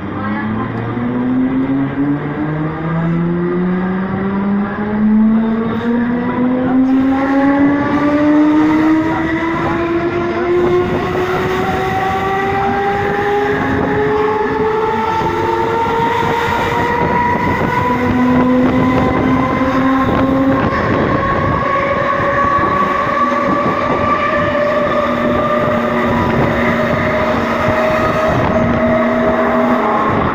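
Mumbai suburban electric local train pulling away and gathering speed: its electric traction drive whines in a rising pitch, climbing in small steps for the first few seconds and then more smoothly and slowly, over the rumble of wheels on rail, heard from inside the coach at the open doorway.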